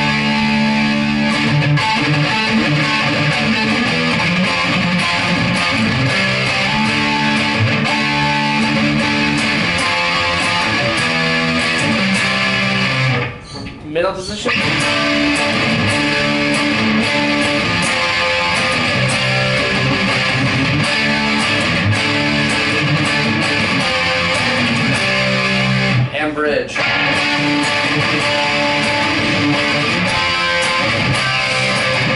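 Gibson Firebird Zero electric guitar played on its neck pickup through an amp's gain channel, with no overdrive pedal: driven chords and riffs, held almost without a break. There is a short stop about halfway, where a note slides upward, and another near the end.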